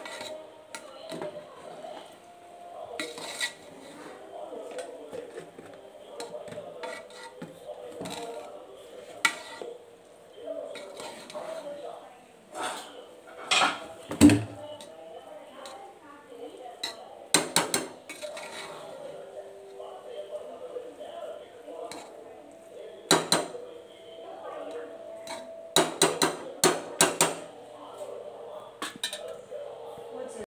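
A spoon stirring rice in a metal pressure cooker pot, knocking and scraping against the sides in irregular clinks. There are quick runs of knocks twice, in the second half.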